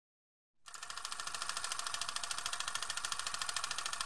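A fast, even rattle of about a dozen ticks a second, mostly high in pitch, starting about half a second in after silence and holding steady.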